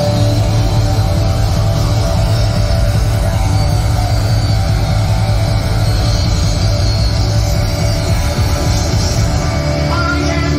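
Heavy metal band playing live, loud and continuous, with drums and electric guitars.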